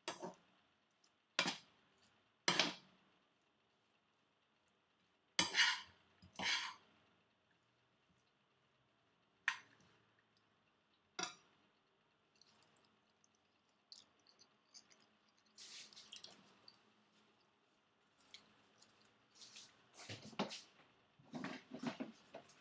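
Metal spoon scraping and clanking against a black iron skillet as fried rice is tossed and stirred. About seven separate strokes come in the first twelve seconds, then lighter, quicker scraping and tapping near the end.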